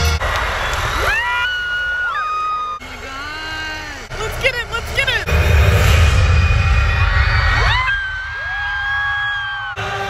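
Live concert heard from the crowd through a phone microphone: a band playing with drums and bass, and voices slide up into long held notes that sound like fans screaming or singing along. The sound changes abruptly several times as short clips are cut together.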